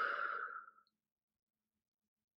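A woman's single audible sighing breath, under a second long, near the start.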